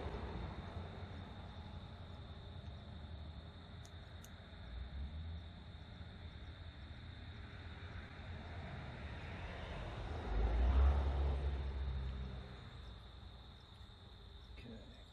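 Outdoor ambience: a steady high insect drone under a low rumble that swells up and dies away about ten to twelve seconds in, with a couple of faint clicks about four seconds in.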